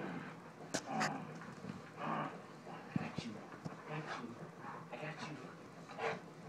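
A yellow Labrador retriever making short, excited vocal sounds while play-wrestling, mixed with a few sharp clicks and scuffles.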